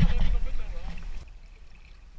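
Water splashing and churning at the side of a boat as a big blue catfish is hauled to the surface, over a loud low rumble. The sound cuts off abruptly just over a second in, leaving only a faint hum.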